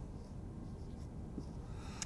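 Dry-erase marker writing numbers on a whiteboard, in faint short strokes.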